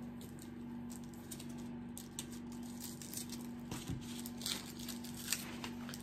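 Faint rustling and small clicks of hands handling gift items, over a steady low hum.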